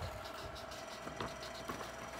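Quiet room tone with a faint steady hum and a few soft clicks from a marker and a paper worksheet being handled.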